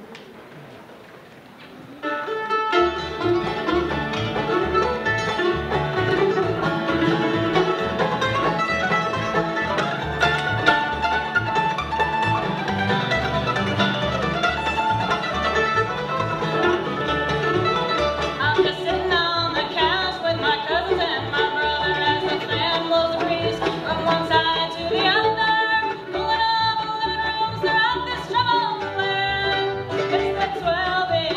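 A live bluegrass band kicks off a song about two seconds in, string instruments over a steady bass beat, with singing coming in about two-thirds of the way through.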